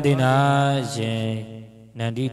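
A Buddhist monk chanting in a low, sustained voice: one long drawn-out phrase that fades away near the end.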